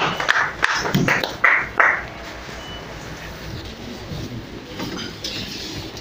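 Brief applause from a small group of people clapping, dying away about two seconds in. It leaves lower room noise with faint voices.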